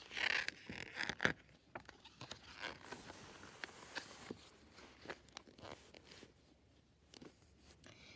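A page of a large picture book being turned by hand: paper rustling and sliding, loudest in the first second or so, then scattered soft rustles and taps as the book is handled.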